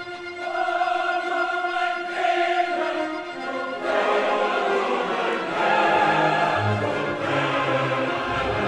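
A symphony orchestra with a large choir performing a choral-orchestral work: sustained chords that grow fuller and louder about four seconds in, with low bass notes joining soon after.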